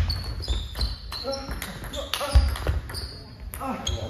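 Table tennis rally: the ball clicking off the bats and the table in quick succession, with a couple of heavy thumps from the players' footwork, one about two seconds in.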